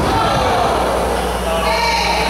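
A person's drawn-out, wavering shout over a steady low hum.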